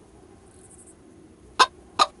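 Cartoon sound effects: two short, sharp bursts, one about one and a half seconds in and another at the end, over a quiet background.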